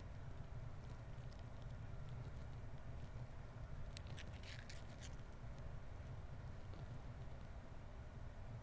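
Faint low wind rumble on the microphone, with a few light clicks and scrapes of seashells being picked up and handled, most of them about four to five seconds in.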